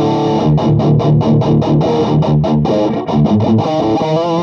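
PRS electric guitar tuned to drop D, played through a Bad Cat 50-watt Lynx valve head and cabinet: a loud riff of short, evenly chopped notes, about six a second, over a repeated low note.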